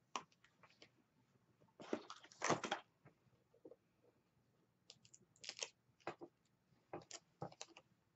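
Small paper-crafting handling noises: light rustles and crinkles of cardstock, sticker pieces and a strip of backing paper being picked up and handled, with scattered small clicks and taps. The louder rustles come in short clusters about two seconds in, about five and a half seconds in, and again near seven seconds.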